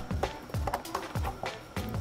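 Soft background music with a few light knocks and taps from a plastic figure display base and card being handled on a table.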